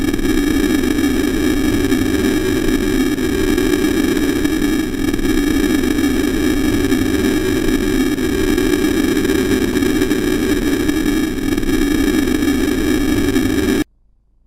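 Loud, steady electronic interference noise, a staged broadcast-jamming sound effect: a thick hiss with several steady high tones on top. It cuts off abruptly just before the end.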